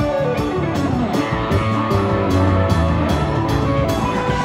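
Live rock band playing an instrumental passage: electric guitar lead with a descending run over about the first second, over electric bass and drums with regular cymbal hits.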